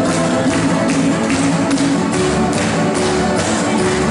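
Lively folk dance music from a live band led by an electronic keyboard, with a steady, crisp beat.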